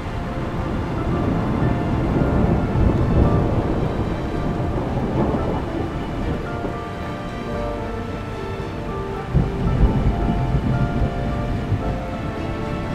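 Thunder rumbling with the hiss of rain over slow background music of held notes. The rumble swells about two to three seconds in and breaks out again, sharper, near the ten-second mark.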